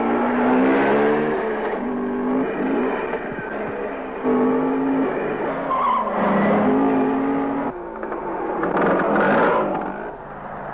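Car engine revving hard in spurts, its pitch climbing and dropping, in a film car-chase soundtrack.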